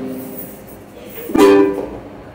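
Ukulele: a strummed chord rings and fades away, then about a second and a half in a single chord is strummed sharply and left to ring.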